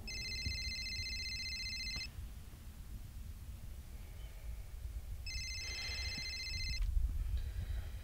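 Mobile phone ringtone ringing twice, an electronic trill of several steady high tones: the first ring about two seconds long, the second about a second and a half, with a pause of about three seconds between.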